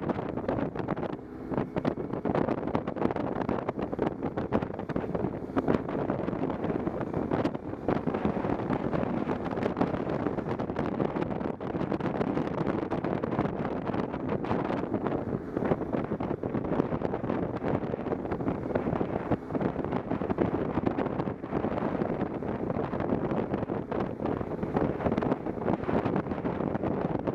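Steady wind rush buffeting the microphone of a camera on a moving motorcycle at road speed, fluttering throughout, with the motorcycle running underneath.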